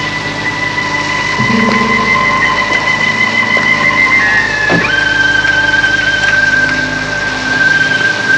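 Suspense film score: high, eerie held tones over a low sustained drone, the top tone stepping down to a lower pitch about five seconds in.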